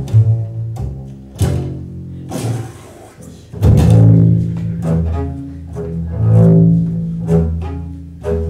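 Improvised double bass: a run of sharply attacked low notes, each left to ring, with the loudest sustained stretch starting about three and a half seconds in.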